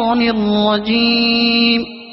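A single voice chanting an Arabic devotional phrase in long, held, melodic notes, fading away near the end.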